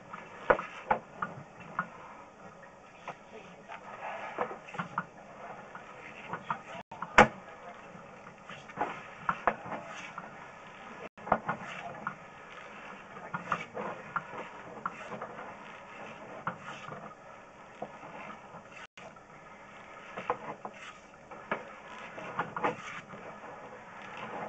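Sewer inspection camera being pushed along a concrete sewer pipe: irregular clicks, knocks and rattles from the push cable and camera head, over a steady low hiss, with one sharper knock about seven seconds in.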